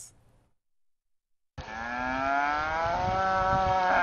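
A cow mooing: one long call of about two and a half seconds, starting about a second and a half in, its pitch rising slightly.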